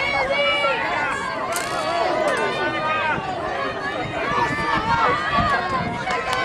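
Track-meet spectators shouting and cheering, many voices overlapping at once.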